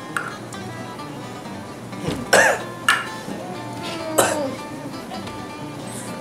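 Background music with three sharp coughs about two to four seconds in: the harsh coughing of someone who has just swallowed a shot of strong spirit.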